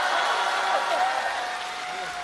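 Theatre audience applauding, with cheering. Around the middle one high voice calls out from the crowd, bending in pitch and then holding for about a second.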